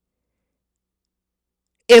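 Dead silence, with no room tone at all, as from a gap cut in the recording. A woman's speech starts near the end.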